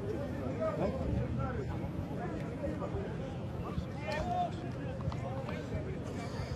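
Pitch-side rugby match ambience: a steady low background noise with faint, scattered shouts of distant voices from players and spectators.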